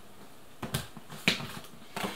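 Plastic shampoo bottles clicking and knocking as they are handled in a cardboard box: a few sharp taps starting about half a second in.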